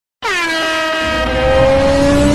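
Loud horn-like intro sound effect: it starts sharply just after the beginning, dips in pitch, then holds a steady multi-tone blare, with a low rumble building underneath from about a second in.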